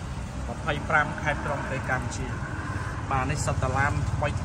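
A vehicle engine idling steadily, a low even rumble under a man's talk.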